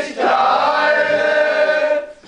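Several men singing together in German, without accompaniment, drawing out one long held note after a short break at the start.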